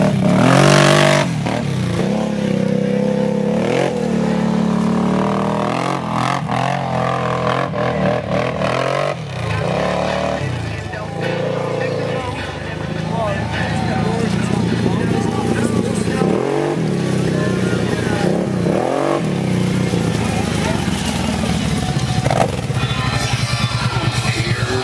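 ATV engine revving up and falling back again and again as the quad climbs a steep, muddy hill, under load, with music playing alongside.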